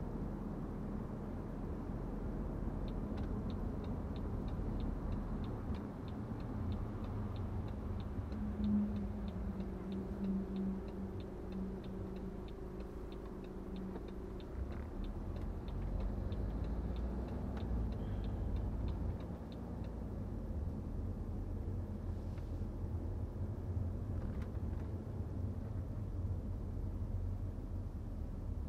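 Steady road and engine rumble of a BMW 520d F10, a four-cylinder diesel, driving in town. About three seconds in, a regular ticking of about three clicks a second starts, the turn-signal indicator, and it stops at about twenty seconds.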